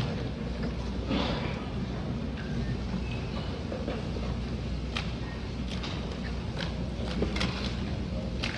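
Room noise of an old film soundtrack: a steady low hum with scattered short clicks and paper rustles, a few about a second in and more from about five seconds on.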